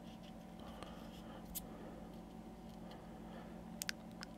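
Faint rustling and light clicks as a plastic toy dinosaur on a base covered in sand and flock is handled and tapped to shake off loose basing material, with two sharp ticks near the end, over a low steady hum.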